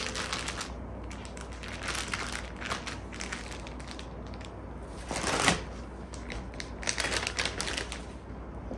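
Plastic zip-lock freezer bag of sour cherries rustling and crinkling as it is pressed flat and handled on a table, in irregular crackles with a louder crinkle about five seconds in.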